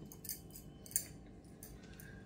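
Faint clicks and cloth rustles as a hijab is adjusted and pinned by hand, with one sharper click about a second in.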